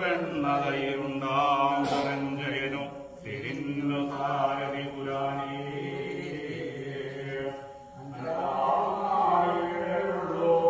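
A group of men and boys chanting a devotional song in unison, with long held notes. A single sharp click comes about two seconds in, and the voices dip briefly just before the eight-second mark, then pick up again.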